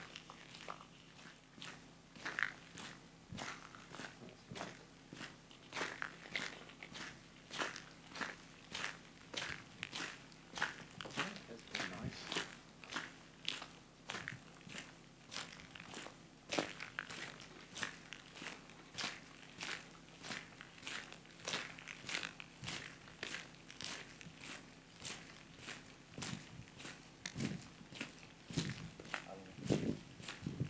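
Footsteps on a gravel road, crunching at a steady walking pace of about two steps a second.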